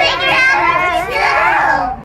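A group of children's voices shouting together, loud and overlapping, cut off abruptly at the very end.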